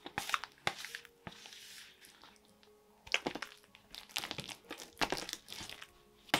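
Hands kneading soft, buttery bread dough on a marble pastry board: irregular sticky squishing sounds in two spells, with a lull in the middle, over faint background music.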